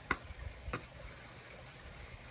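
Faint handling noise with two soft clicks, one right at the start and one under a second in, over low background hiss.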